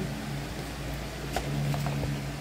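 Low closed-mouth 'mmm' humming while chewing a piece of chocolate, held in stretches with short breaks. There is a sharp small click about one and a half seconds in, then a couple of faint ticks.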